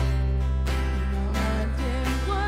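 Live praise and worship band playing: strummed acoustic and electric guitars over a held low chord, with a voice singing from about a second in.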